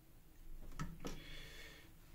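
Two faint clicks a little under a second apart, small plastic Lego pieces being handled on a table.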